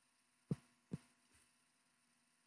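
Two short, soft thumps a little under half a second apart, against near silence.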